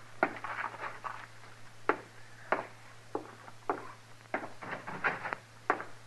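Radio sound-effect footsteps, slow walking steps on a wooden floor about two thirds of a second apart, over a steady low hum in the old recording.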